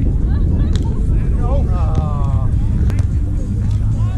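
Volleyball being hit in a sand-court rally: two sharp smacks of hands striking the ball, about a second apart near the start and again near three seconds, over a steady low rumble of wind on the microphone. A player's shouted call comes in the middle.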